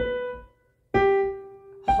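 Digital piano playing single right-hand melody notes, detached: a short lifted note that dies away, a brief silence, then a lower note struck about a second in and held, with the next note starting at the very end.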